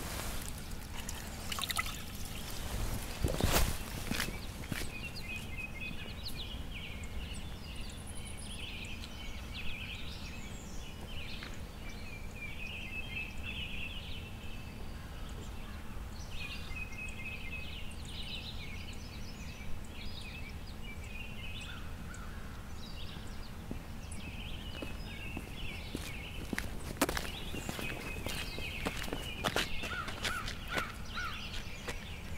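Outdoor ambience: songbirds singing in repeated short phrases over a steady low background rumble. A brief loud noise cuts across it about three and a half seconds in.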